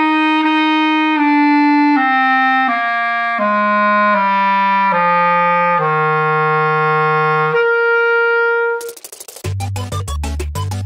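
Backun Lumière B-flat clarinet playing a descending F major scale down to low F, holding the low F only slightly flat with its automatic low-F vent open, then the C a twelfth above, where pressing the register key closes the vent. Near the end, upbeat electronic music cuts in.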